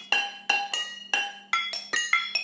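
Kitchen pots, cups and jars struck as percussion, playing a batá rhythm: about six sharp, clinking strikes, each ringing on at several pitches before fading.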